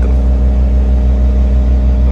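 Caterpillar 236D skid steer loader's diesel engine running steadily at a constant speed, heard from inside the cab.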